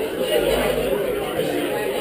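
Crowd chatter: many people talking at once in a room, with no single voice standing out.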